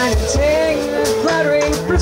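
Live jazz band playing a song: a lead melody line over electric bass notes, kick drum and cymbals.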